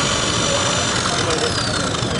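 RIDGID K-45 hand-held drain cleaning machine running, its motor spinning the cable drum while the auto-feed works the cable. The motor's high whine falls in pitch about a second in as it slows.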